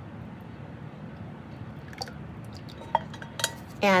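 Cooled lye solution poured from a stainless steel pitcher down a spatula into a plastic jug of soap oils: a soft, steady pouring sound, with a few light clicks in the second half.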